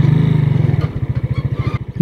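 Single-cylinder four-stroke engine of a small Serpento 150 motorcycle running at low revs with a quick, even putter as the bike rolls slowly onto a dirt yard. The engine is strongest in the first second and eases off after that.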